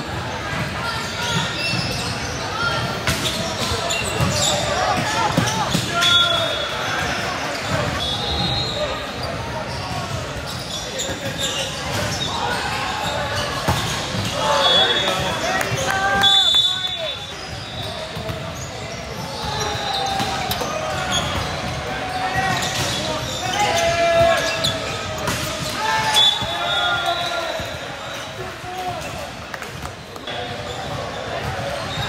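Volleyball being played in a large, echoing gym: players and spectators calling out and chattering, with thuds of the ball being hit during the rallies.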